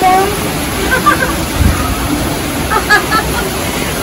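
Steady rushing of rain falling, with a few short bits of voices.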